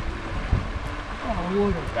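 Creek water running steadily over shallow riffles, with a short voice exclamation near the end.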